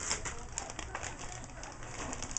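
Packaging rustling and crinkling as small craft supplies are handled, a quick run of small crackles.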